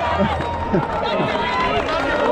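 Men's voices calling out and talking in short fragments, with a low steady rumble through the first second.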